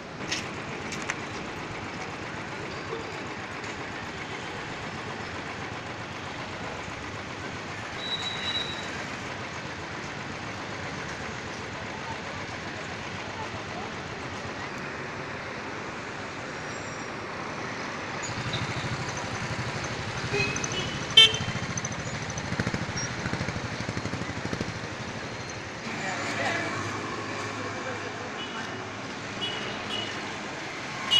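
Street traffic noise heard while riding through the city: a steady rush of road and wind noise, with a short high toot about eight seconds in. From about eighteen seconds in it grows busier and louder, with high toots, one sharp loud sound, and voices near the end.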